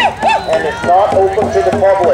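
Several people's voices at once, overlapping and indistinct, with no single speaker standing out.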